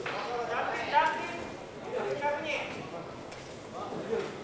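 Men's voices calling out in short shouts, several times over the fight, the way corners and spectators yell during a kickboxing bout.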